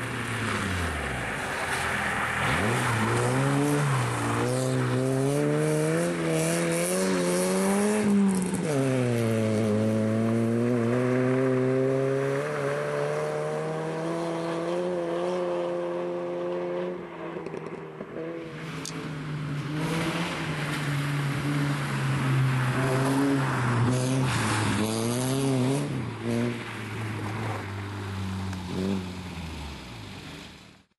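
Peugeot 106 rally car's engine revving hard through the gears, its pitch climbing and then dropping sharply at each shift, with a falling pitch near the start as the car passes close by. The sound breaks off and picks up again about halfway through as the shot changes to another pass of the car.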